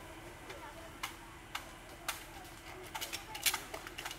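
Sharp clicks and slaps of a rifle drill, hands striking the rifles as a line of soldiers moves them. They come about two a second at first, then in a quick cluster near the end, over a faint murmur of voices.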